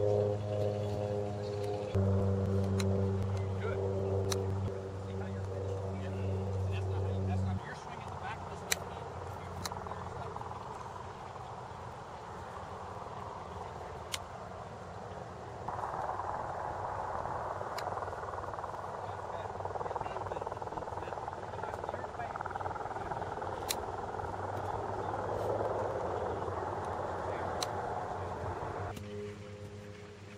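Outdoor background: a steady low hum for the first seven or so seconds, then a rushing background noise, with a few sharp clicks of golf clubs striking balls on chip shots.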